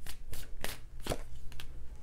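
A tarot deck being shuffled and handled, heard as a run of short, crisp card clicks and flicks, as a card is drawn from the deck and laid on the table.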